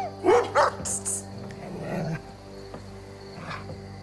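A dog barks a few short times in the first second, over a steady, sustained music score.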